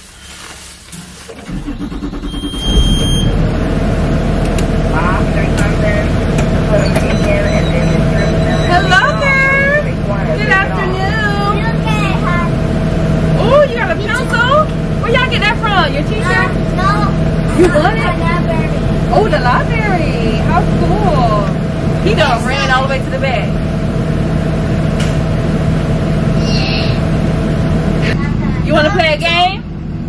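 School bus engine idling inside the bus, a loud steady drone that comes up about two seconds in, with children's high voices calling and chattering over it.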